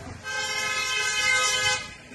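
A vehicle horn sounding one steady blast about a second and a half long, cutting off sharply.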